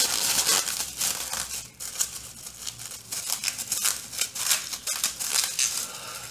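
Irregular rustling and crinkling, a dense run of quick scratchy strokes.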